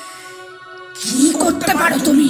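Background music holding steady drone tones. About halfway through, a voice comes in over it.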